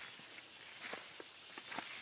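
Footsteps on forest-floor leaf litter and brush, a few soft, irregular crunches over a faint steady high hiss.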